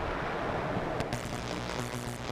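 Steady hiss with a low electrical buzz on the audio line; a click about a second in, after which the buzz grows stronger.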